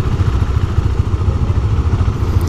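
KTM Duke 390's single-cylinder engine idling with a steady, fast-pulsing low rumble.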